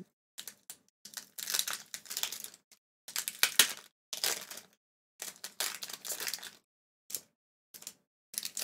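Foil wrapper of a Pokémon card booster pack crinkling and tearing as it is opened by hand, in a string of short bursts with brief pauses between them.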